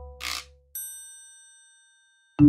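Editing sound effects: a brief swish, then a single bright bell-like ding about three quarters of a second in that rings and fades away.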